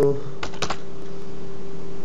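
Two keystrokes on a computer keyboard, close together about half a second in, while a voice holds a long, steady 'aah'.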